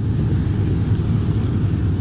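Wind buffeting the microphone: a steady low rumble with a faint hiss above it.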